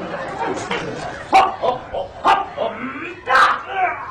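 A man's voice giving a handful of short, sharp, high yelps, the last and longest near the end.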